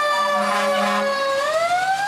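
Fire engine siren wailing: one tone that holds steady, dips slightly, then climbs again near the end.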